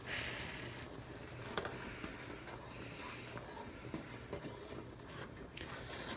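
Saucepan of water at a foaming boil, near boiling over, bubbling faintly, with a few light clicks from a fork against the pot.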